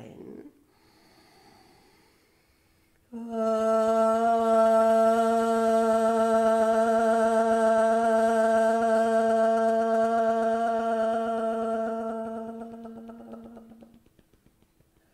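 A woman's voice toning one long, steady 'A' (aah) vowel at a single pitch. It comes after a faint in-breath, starts about three seconds in and fades out near the end, while she taps her chest with loose fists in a yoga toning exercise.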